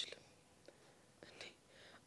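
Near silence in a pause between spoken lines, with a few faint breathy sounds from the speaker.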